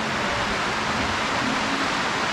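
Steady rain falling, an even hiss with no distinct drops or knocks.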